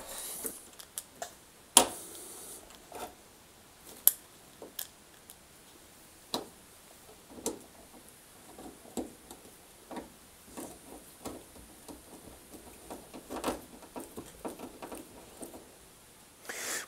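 Irregular small clicks and taps of a plastic wiring connector being pushed home and a hand screwdriver working screws into a tumble dryer's sheet-metal back panel, with one sharper knock about two seconds in.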